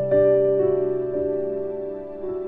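Slow background music of held keyboard notes, with new notes coming in a few times, about half a second apart.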